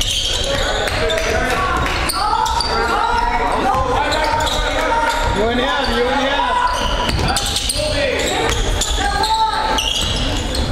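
Basketball dribbled and bouncing on a hardwood gym floor during live play, with voices calling out over it, echoing in a large gym.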